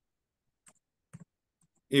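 Mostly near silence with two faint, short clicks about half a second apart, then a man's voice starts right at the end.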